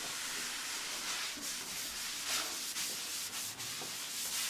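A cloth rag wiping chalk off a chalkboard: a steady rubbing hiss that swells slightly with each stroke.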